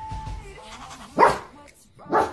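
A dog barks once, about a second in, over quiet background music.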